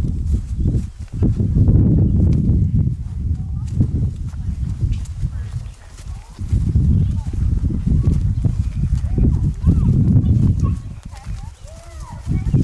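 A horse being led at a walk with a child on its back, its hooves on grass, under a loud, uneven low rumble.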